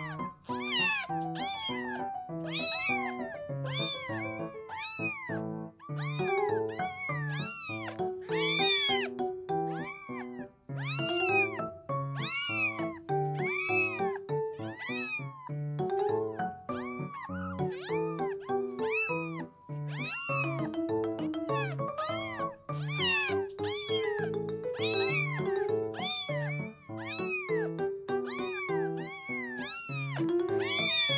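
Kitten meows, many short high-pitched calls in quick succession, dubbed as sound effects over gentle background music.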